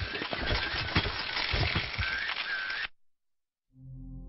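A dense clicking noise with a few short high chirps cuts off abruptly about three seconds in. After a brief silence, soft sustained musical tones begin near the end.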